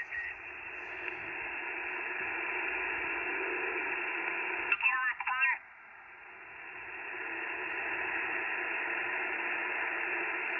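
Icom IC-705 receiving upper sideband on the 20-metre band while being tuned, its speaker giving a steady, narrow hiss of band noise. About five seconds in, a brief snatch of a warbling, off-tune sideband voice breaks through. The hiss then drops and slowly swells back up.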